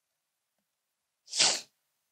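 A single short, sharp burst of breath noise from a person close to the microphone, about a second and a half in.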